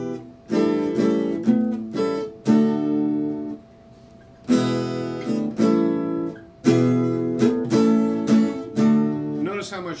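Acoustic guitar playing a short chord passage, a series of strummed chords that ring and fade, with a pause of about a second near the middle. The passage uses a conventional E7 chord in place of a tritone substitution chord.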